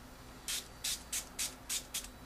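Small pump spray bottle squirting installation solution onto the adhesive side of a clear protective film: about six quick, short hisses, three or four a second.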